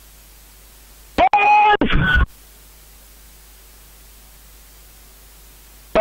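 A short spoken call, about a second long and starting about a second in, over a radio-link microphone. A steady hiss runs under it.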